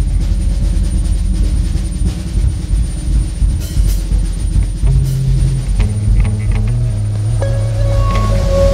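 Fender Telecaster electric guitar played through an amplifier: a loud, droning wash of sustained low notes, with new held notes coming in about five seconds in and again near the end.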